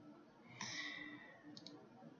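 Faint computer-mouse clicks: a quick pair about a second and a half in. Before them comes a soft hiss that fades over about half a second.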